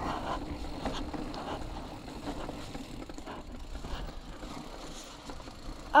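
Mountain bike rolling slowly down a dirt trail through berms. The tyres make a steady noise on the loose dirt, with small rattles and knocks from the bike over bumps.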